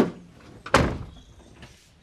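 Car door slammed shut about a second in, a heavy thump, after a sharper knock at the very start.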